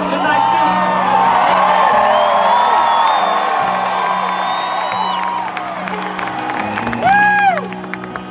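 Concert crowd cheering and whooping, many shouts overlapping, over a steady low musical drone. About seven seconds in, one loud whoop comes from close by.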